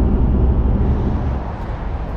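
Steady engine and road drone inside the cabin of a Mazda BT-50 ute on the move, low and even, easing off slightly near the end.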